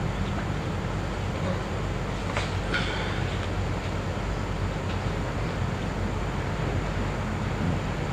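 Steady low electrical hum and hiss of an old recording's background noise, with no voice, and a couple of faint clicks about two and a half seconds in.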